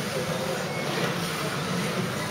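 Kyosho Mini-Z 1:28-scale electric RC cars running on a carpet track: the steady whir of their small motors and gears.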